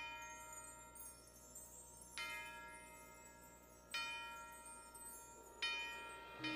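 A bell-like note struck on marching-band front-ensemble percussion, repeated three times, about one and a half to two seconds apart, each ringing out slowly.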